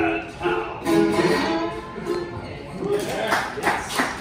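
Closing bars of a Hawaiian song on ukulele and lap steel guitar, with a man singing a held note; the music ends about three seconds in and clapping starts.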